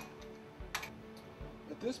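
A few light, sharp metallic clicks as a torque wrench is worked on the steel strap nuts of a submersible pump, the clearest about three-quarters of a second in.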